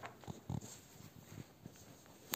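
Faint handling noises: a few soft thumps and a light rustle as sheets of drawing paper are set down and another picked up, the loudest thump about half a second in.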